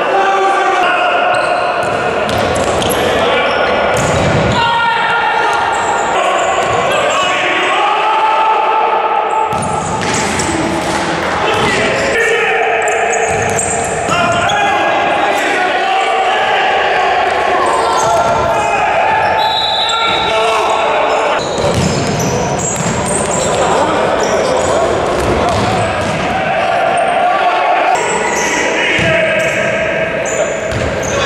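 A futsal ball being kicked and bouncing on the wooden floor of a sports hall, with voices calling out across the court throughout.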